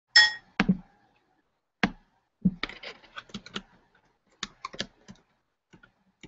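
A short ringing ding right at the start, then irregular clicks and quick runs of key taps on a computer keyboard.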